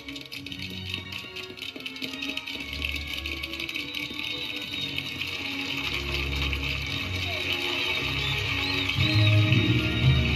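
Instrumental film music with sustained notes, swelling gradually in loudness, with a few faint high chirps about eight seconds in.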